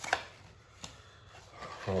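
Trading cards and their packaging being handled on a table: a short sharp tap just after the start and a lighter click a little before one second, with quiet handling between.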